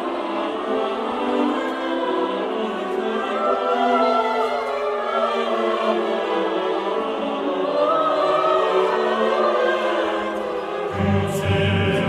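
Choir singing a slow passage of held notes in a late-Romantic oratorio, with orchestra. At first the parts are all in the middle and upper range; a deep bass part comes in about eleven seconds in.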